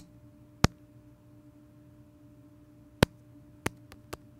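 Sharp clicks as digits are tapped into a smartphone's on-screen dialer keypad: one at the start, one just after half a second, then three in quick succession near the end, over a faint steady hum.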